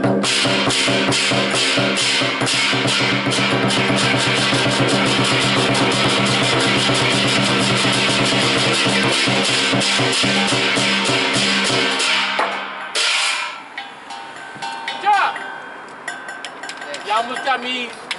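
Lion dance ensemble of a large lion dance drum beaten with sticks, clashing hand cymbals and a hand gong, playing a fast, dense rhythm with the gong ringing throughout. The playing stops about twelve seconds in, with one last loud crash just before thirteen seconds, then voices.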